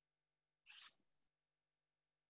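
Near silence: room tone, with one brief faint hiss just under a second in.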